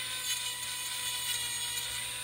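Corded handheld rotary carving tool running with a steady high whine, its bit grinding on a cedar walking stick.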